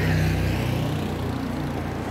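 Street traffic with a motor vehicle's engine running close by: a steady low hum that eases slightly over the two seconds.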